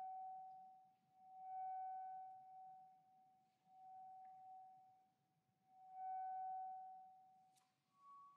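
Soprano saxophone playing one soft high note, held and repeated, each note swelling and fading, about four times. A short click sounds near the end.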